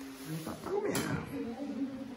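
Low voices in the background of a small kitchen, with one short sharp clatter about halfway through.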